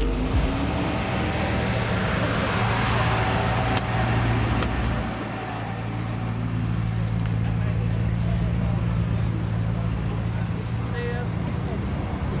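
Maserati GranTurismo's V8 running at low revs as the car drives slowly away, a steady low engine note with a brief dip about five seconds in.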